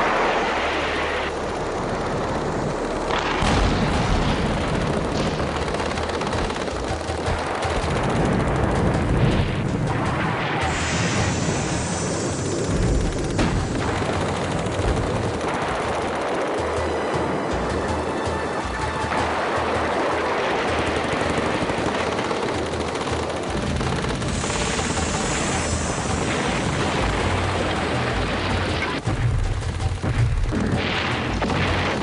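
Bursts of machine-gun fire and explosions from battle footage, dense and continuous, mixed with music.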